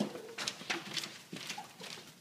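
Footsteps of several people walking on a hard floor, about three or four steps a second.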